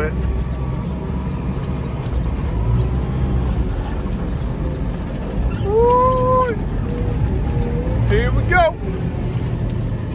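JCB telehandler's diesel engine running, heard from inside the cab as it carries a bale of hay. A short tone that rises and falls cuts through about six seconds in.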